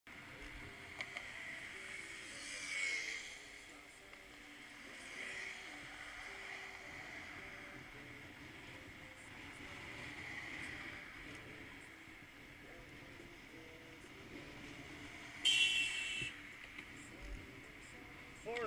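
Wind and road noise from riding a bicycle, with one short, loud horn honk about fifteen seconds in.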